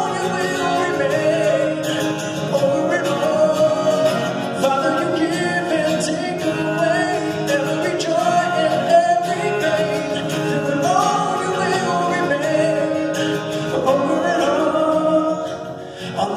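A man singing a sustained, wordless melody over a strummed acoustic guitar.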